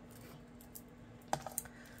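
Low room tone, then a quick cluster of three or four light clicks about one and a half seconds in, from cut card stock being handled at a guillotine paper trimmer.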